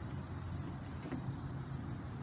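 A car engine idling: a steady low hum.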